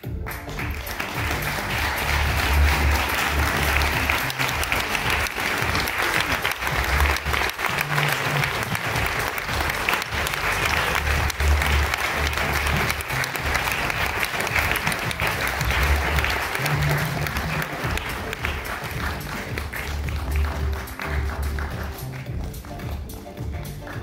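Audience applauding steadily, starting at once and easing off slightly near the end. Music plays underneath, with a pulsing bass line.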